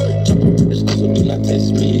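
A rap track playing at full volume through a JBL Charge 4 Bluetooth speaker, grille off and set to its LFM EQ mode, the woofer pushing deep, held bass notes under quick ticks of percussion.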